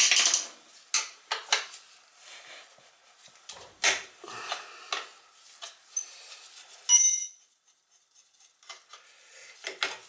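Metal hand tools clicking and knocking against the sheet-metal body of a Beckett oil burner as it is opened up for service, with a loud knock right at the start. About seven seconds in comes one sharp metallic clink that rings briefly.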